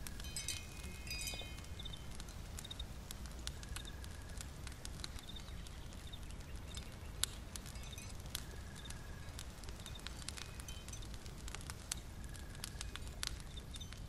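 Small wood fire crackling in a hearth, with scattered pops and one sharper pop about halfway through, over a low steady rumble. Faint high bird chirps come and go, with a short run of them near the start.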